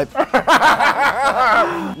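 Men laughing, in breathy bursts.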